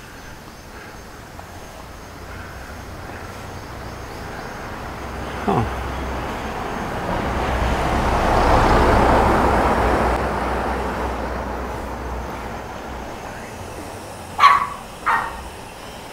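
A vehicle passes, its noise swelling and then fading over several seconds. Near the end a small dog barks twice, short and sharp.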